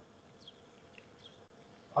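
Quiet pause on a video-call line: a low steady hiss with three faint, brief high chirps that glide downward, about half a second, one second and a second and a quarter in.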